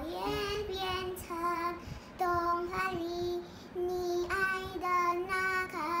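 A five-year-old girl singing a Mandarin song in short phrases with brief breaks between them.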